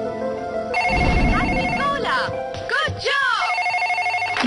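Corded landline desk telephone ringing with a pulsed electronic trill. It comes in two bursts, the first starting about a second in with a low thump, the second near the end.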